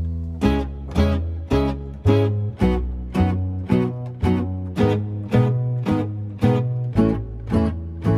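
Instrumental break of a song: a guitar strummed in a steady rhythm, about two strums a second, over a bass line.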